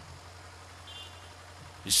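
Steady low hum under faint background noise, with a brief faint high tone about a second in; a man's voice starts again just before the end.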